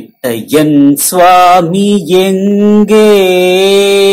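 A man singing a Tamil devotional song in a chant-like style, short sung phrases giving way to a long held note for the last second or so.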